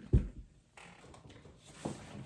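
A file cabinet being shifted and turned on the floor: one heavy thump just after the start, then quiet shuffling and a softer knock near the end.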